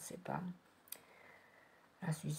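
A single sharp click a little under a second in, from a deck of tarot cards being handled in the hand.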